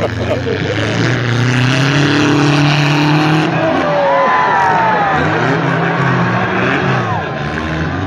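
Engines of compact demolition-derby cars revving up and down in the arena, their pitch rising and falling over a few seconds, with shouts and voices from the crowd over them.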